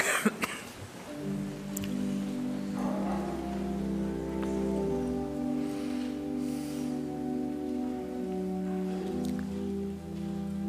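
Pipe organ playing slow, soft held chords over a sustained deep bass note, the chords changing every second or so, starting about a second in. Right at the start, a man's cough and a couple of sharp knocks.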